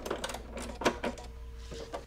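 A few sharp, irregular clicks and handling sounds at a sewing machine as the fabric and thread are pulled out from under the presser foot, with a faint steady hum in the second half.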